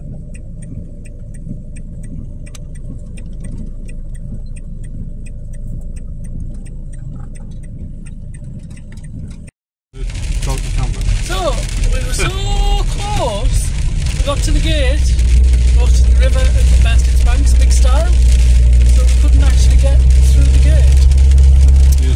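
A van engine running, heard from inside the cab: a low rumble with faint scattered ticks. After a sudden cut about ten seconds in, a louder, steady low engine drone continues.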